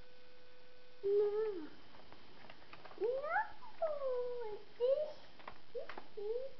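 Animal-like calls played by a children's electronic jungle sound book: four or five bursts of short calls sliding up and down in pitch, with a few sharp clicks between them. A steady hum stops about a second in, as the calls begin.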